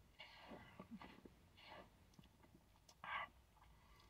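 Near silence with faint mouth sounds of a person tasting a sip of soda: a few soft breaths, the loudest a short breath out about three seconds in, and small lip and tongue clicks.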